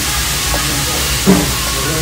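Okonomiyaki and yakisoba sizzling on a hot tabletop iron griddle: a steady hiss.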